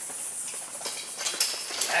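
A small dog running through a line of agility weave poles: a quick, irregular run of taps and clicks from its paws and the poles it brushes past, getting louder in the second second.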